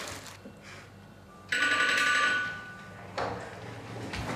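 Doorbell ringing once, a steady ring lasting about a second.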